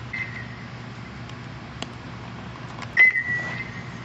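Aluminum bat striking a baseball about three seconds in: a sharp crack followed by a ringing ping that fades over most of a second. A fainter ring of the same pitch sounds at the very start.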